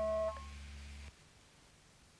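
Final held chord of a rock song on guitar, with a low note underneath. The guitar cuts off about a third of a second in and the low note about a second in, leaving faint hiss.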